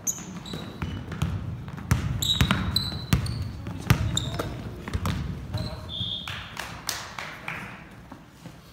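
Basketball bouncing on a hardwood gym floor, several hard knocks in the middle seconds as it is dribbled, with short high squeaks of sneakers on the court and players' voices.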